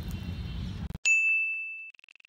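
A single bell-like ding sound effect about halfway through: one clear high tone that strikes suddenly and rings, fading away over about a second. Before it comes low, even outdoor background noise that cuts out just before the ding.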